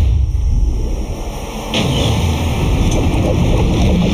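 Deep, loud rumble of trailer sound design, with a sudden rush of hiss coming in just under two seconds in.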